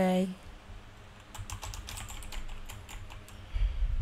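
Typing: a quick run of light clicks for about a second and a half, followed near the end by low thuds.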